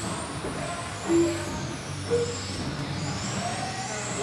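Several 1/10-scale electric touring cars with 21.5-turn brushless motors racing, their motors whining high and sliding up and down in pitch with throttle. Two brief low tones sound about one and two seconds in.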